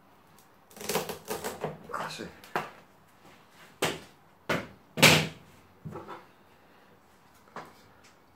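Bonsai scissors cutting the woody base of juniper stems to trim them for cuttings: a quick run of crisp snips and crunches, then three sharp snips about half a second apart and a few lighter clicks.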